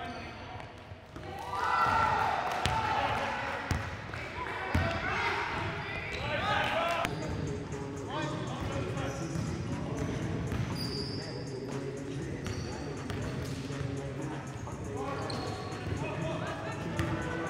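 A basketball bouncing on a gym floor during a game, with short knocks scattered throughout and players' voices calling out, loudest a couple of seconds in. It sounds like a large indoor gym.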